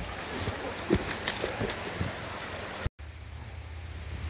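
Rushing water of a shallow, fast creek, with a few sharp knocks over it. The sound cuts out for a moment near the end and comes back as a steadier low rumble.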